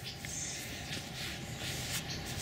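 Outdoor background ambience: a steady faint hiss with no distinct events.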